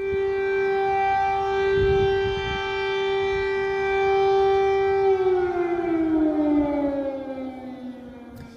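Air raid siren sounding a steady held tone, then winding down in pitch from about five seconds in.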